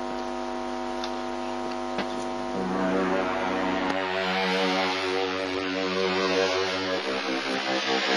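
A sustained droning hum made of several steady tones. About two and a half seconds in, a lower set of tones and a hiss join it, and it grows a little louder.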